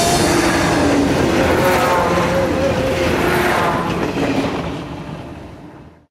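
A train passing close by: a dense, steady rolling noise with faint wavering tones over it, fading out over the last two seconds.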